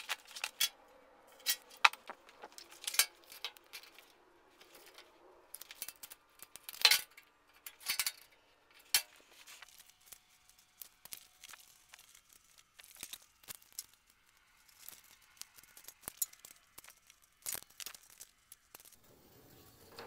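Faint handling noise from strips of anti-slip traction tape being positioned: scattered short clicks, taps and crinkling rustles at irregular intervals.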